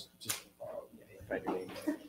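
Brief, indistinct speech and murmuring voices in short fragments.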